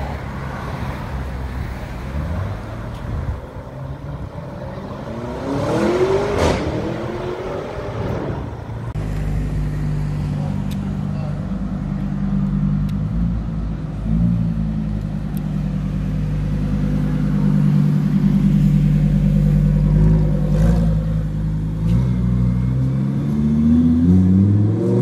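Lamborghini Huracán V10 running steadily at low revs while it rolls slowly along, then revving up and accelerating near the end, its pitch rising. About six seconds in, another supercar engine revs up briefly.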